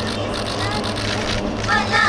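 Street background with a steady low hum of idling vehicle engines and traffic, with voices rising above it near the end.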